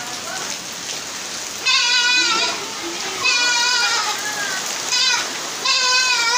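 Steady hiss of heavy rain mixed with hail falling on clay roof tiles and a yard. Three loud, high-pitched, wavering cries ring out over it: about two seconds in, a little past three seconds, and near the end.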